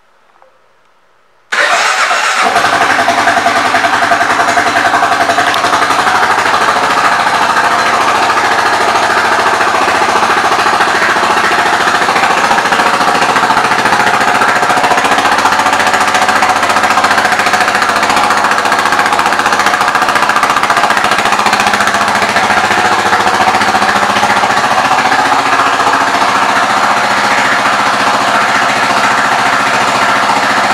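2022 Kawasaki KLR 650 Adventure's single-cylinder engine, recorded loud and close: it comes in suddenly about a second and a half in, then idles steadily.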